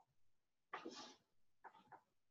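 Very faint whispering, one soft breathy burst about three-quarters of a second in and a couple of shorter ones near the end, over near silence.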